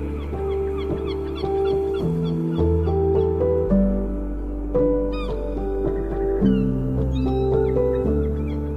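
Slow ambient instrumental music: sustained notes over a deep bass tone that shifts pitch a few times. Short high gliding cries come in about five seconds in.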